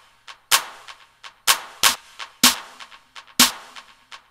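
Roland TR-808-style snare and clap samples playing back in a drum loop: a sharp hit about once a second, on every other beat, each with a short reverb tail. Fainter, lighter hits fall in between.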